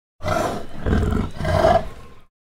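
A black panther's roar: one rough roar of about two seconds that starts a moment in and swells twice, loudest near the end.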